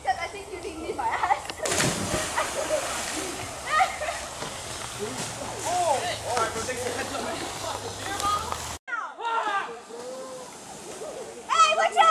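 A person dropping off a rope swing into a river: one loud splash about two seconds in, with the water churning for a moment after.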